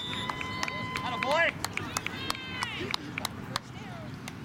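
Outdoor shouting and calling from many voices, several of them high-pitched children's voices, with a few held calls in the first second and a scatter of short clicks.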